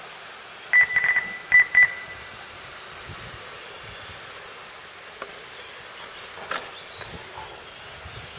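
Radio-controlled touring cars racing, their motors a faint high whine that rises and falls as they lap. About a second in comes a quick run of about five short electronic beeps, typical of a race timing system registering cars crossing the line.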